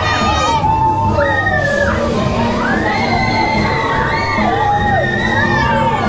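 Riders, mostly children, screaming and shouting on a spinning fairground ride: many overlapping long cries, each rising and then falling away, over a steady low hum.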